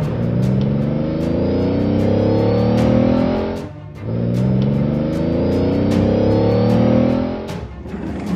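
Dubbed car engine sound accelerating in two long rising revs, with a short break about three and a half seconds in, over background music with a steady ticking beat.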